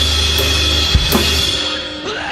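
Acoustic drum kit played live along with a rock song's backing track, which has its original drums removed. Kick and cymbal hits sit over sustained bass and guitar, with a strong accent about a second in, and the band thins out slightly near the end.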